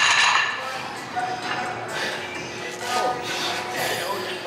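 Background music fading out, then gym room sound with faint voices and a few light metallic clinks.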